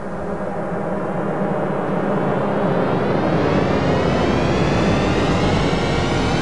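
A swelling intro riser: a dense, many-toned drone that grows steadily louder, with its upper tones climbing in pitch from about halfway in.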